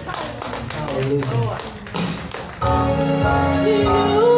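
Church worship music: a voice over a steady run of rhythmic taps, then about two-thirds of the way in a held instrumental chord with a bass comes in. Near the end a woman begins singing a long note with vibrato.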